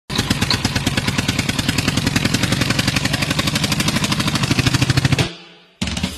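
An engine running at a fast, even chug, about a dozen beats a second, fading out about a second before the end: a tractor-engine sound effect used as the intro of a dance song. Music starts right at the end.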